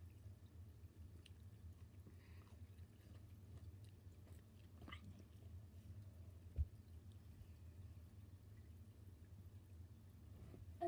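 Near silence: a steady low hum with a few faint clicks, and one short low thump about two-thirds of the way through.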